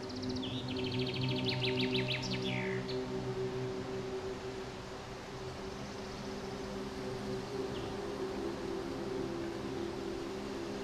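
Slow, sustained ambient music chords with a songbird singing over them. The bird gives a burst of rapid high trills and down-sweeping notes in the first three seconds, and a short call again near the end.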